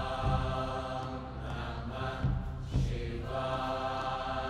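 Devotional chanting with long held notes that break off and start again, with a few dull low thumps.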